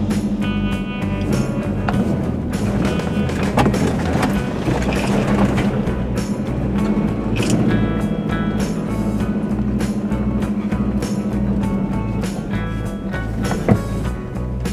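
Background music with a steady beat and recurring chords.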